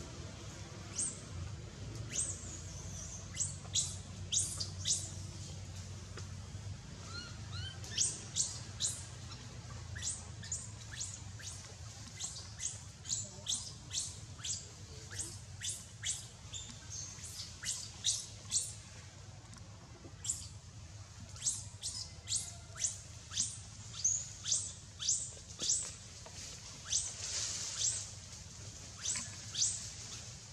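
Small birds chirping: many quick, high-pitched chirps, each sweeping downward, coming in irregular runs with short pauses, over a steady low hum.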